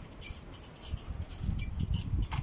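Wind buffeting the microphone in an uneven low rumble that grows stronger in the second half, with a scatter of short, faint high-pitched squeaks.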